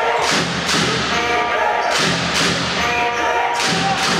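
Indoor basketball arena during live play: repeated heavy thuds that ring on in the hall, at uneven spacing, over a steady bed of music and crowd noise.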